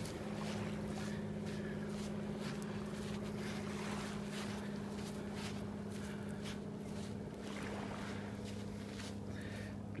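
A steady low hum runs throughout, with faint, irregular crunches of footsteps on shell-strewn sand.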